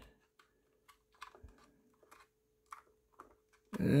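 A few faint, scattered clicks and taps from a plastic scale-model pickup truck being handled and set down on a display turntable, over a faint steady hum.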